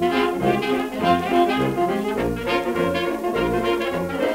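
A 1928 jazz band recording played from a 78 rpm record, transferred without noise reduction. Cornet and trombone lead over clarinet and saxophone, piano and banjo, with a brass bass (tuba) marking a steady beat underneath.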